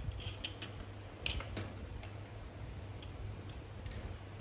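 A few light, sharp clicks and ticks of small metal hand tools being handled, the sharpest about a second and a quarter in, over a low steady hum.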